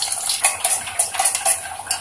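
A metal spoon stirring semolina batter in a stainless steel bowl, clinking and scraping against the sides in quick, irregular strokes.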